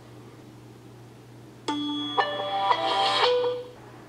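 Samsung Galaxy smartphone's startup chime as it boots: a short melody of clear, bell-like tones that begins about halfway in and lasts about two seconds before fading.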